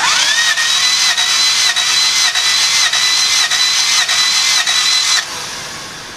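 1994 Honda Civic D16Z6 four-cylinder engine cranking on its starter motor for a compression test. The starter whine rises at the start, then holds with a regular pulse a little under twice a second, and cuts off suddenly about five seconds in. The readings across all four cylinders come out low.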